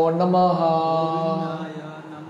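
A man chanting a Sanskrit mantra in a single held, melodic note on "namo", which fades away toward the end.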